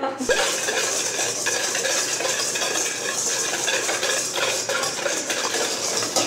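A wire whisk beating a mixture by hand in a stainless steel mixing bowl: a steady, rapid scraping and clinking of metal on metal.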